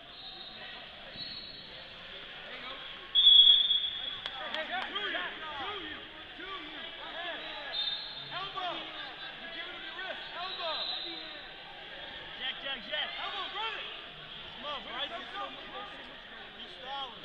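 Spectators shouting indistinctly around a wrestling mat, many short overlapping calls. About three seconds in there is a short, loud, high tone.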